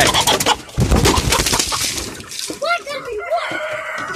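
A rooster just grabbed in a wire cage: scuffling and rattling against the cage, then a run of squawking calls from about two and a half seconds in.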